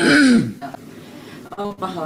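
A person clearing their throat once: a loud, short, rasping burst that falls in pitch. After a brief pause, speech resumes near the end.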